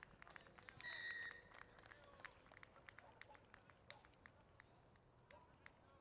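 A referee's whistle is blown once, short and shrill, about a second in, as the ball is grounded for a try. Scattered sharp clicks follow, along with faint distant voices.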